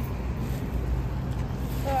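Steady low drone of background traffic, with a brief spoken 'oh' near the end.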